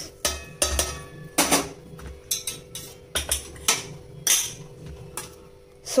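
Stainless steel plate and bowl clinking and knocking against a steel vessel as spices are tipped in, about a dozen sharp, irregular clinks. A faint steady hum runs underneath.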